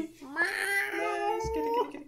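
A man imitating a cat with his voice: one long, drawn-out, cat-like call that rises in pitch, holds, and cuts off near the end.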